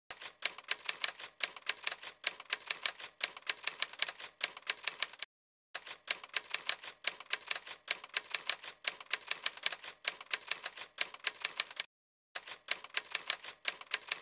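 Typewriter keys clacking in rapid, irregular runs, a typing sound effect, with two short pauses, about five seconds in and about twelve seconds in.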